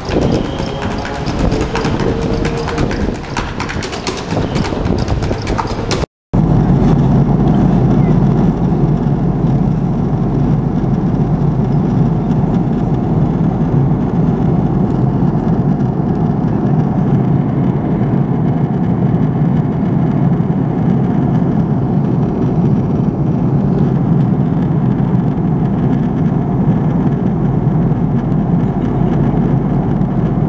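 Drumsticks beating on upturned plastic buckets in a fast run of strikes, cut off abruptly about six seconds in. Then the steady, low drone of a jet airliner's cabin in flight.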